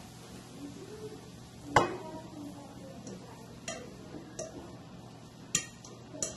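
A utensil knocking and scraping against a frying pan as cooked spaghetti squash is emptied from it into a baking dish: one sharp clink a little under two seconds in, then a few lighter taps.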